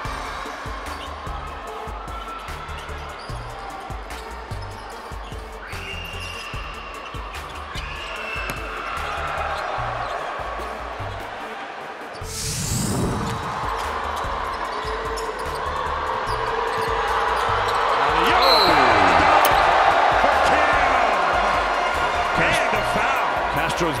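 Basketball game sound from a packed arena under a highlight-reel music bed with a steady bass beat. A quick whoosh sweeps through about halfway, and the crowd noise swells to its loudest in the second half.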